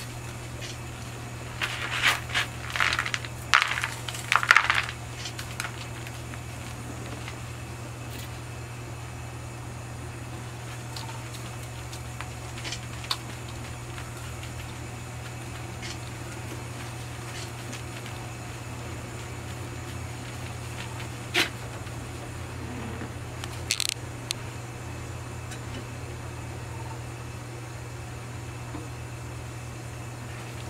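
Metal scraping and clinking as a gloved hand wipes molten tin across a copper grater blank over a tray of tin scraps, in a burst during the first few seconds. After that a steady low hum goes on, with a few single clicks as the plate is heated over a gas burner.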